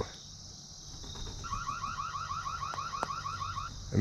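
Reolink security camera's built-in siren, triggered remotely from a phone app, sounding a rapid run of rising electronic whoops, about six a second. It starts about a second in and stops shortly before the end. Crickets chirp steadily throughout.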